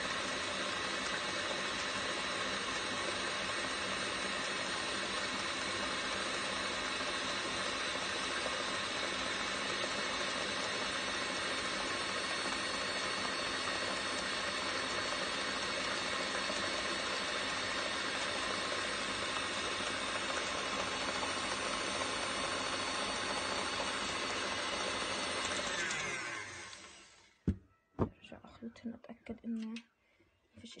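KitchenAid Classic Plus tilt-head stand mixer running steadily at speed, its wire whip beating cream cheese and whipping cream to a firm cheesecake filling. About 26 s in it is switched off and its motor winds down, and a couple of sharp knocks follow near the end.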